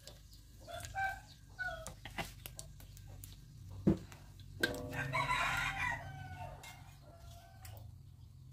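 Chickens in the background: short clucking calls about a second in, then a rooster crowing for a little over a second about five seconds in. A couple of sharp knocks fall between them.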